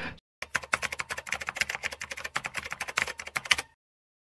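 Typing sound effect: a rapid, even run of key clicks, about ten a second, for some three seconds, stopping abruptly.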